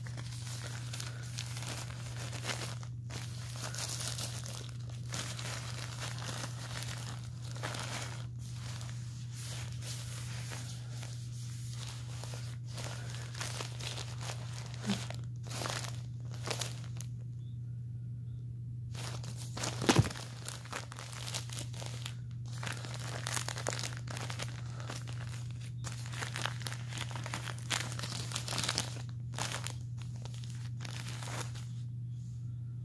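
The plastic backing of a Bambino Safari adult diaper crinkling on and off as hands rub and flatten it, with one sharp knock about twenty seconds in.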